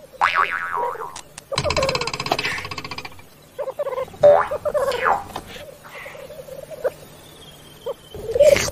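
Male black grouse display calls: a low bubbling cooing runs throughout, with several louder, higher calls that slide in pitch, and a buzzy stretch lasting about a second and a half.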